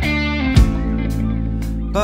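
Rock music from a guitar, bass and drums trio: sustained electric guitar chords ringing over the bass, with one drum hit a little over a quarter of the way in, in an instrumental passage between sung lines.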